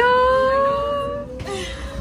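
A drawn-out, wailing "Yaaa!" cry of exasperation, lasting about a second and a half and rising slightly in pitch before trailing off. A faint steady whine runs underneath.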